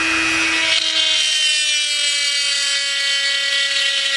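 Dremel 300 rotary tool running at mid speed, its bit melting and carving through a plastic model panel. A steady whine that sags slightly in pitch over the first couple of seconds.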